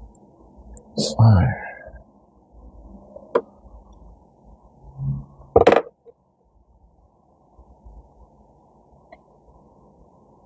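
Hands handling a small bonsai pot, its soil and a plastic tray: one sharp click a few seconds in and a louder short knock just after halfway, then only faint background.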